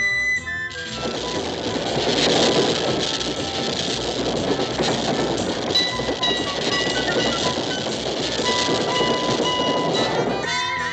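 Cartoon sound effect of a streetcar running along its rails, a dense rattling clatter that starts about a second in. Short held music notes sound over it in the second half.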